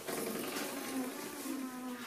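A person's voice making a steady, buzzing hum at a low pitch, like an imitated bee.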